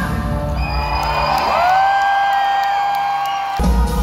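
Live gospel stage music: a singer slides up into one long held high note while the bass and drums drop away, then the full band comes back in abruptly near the end.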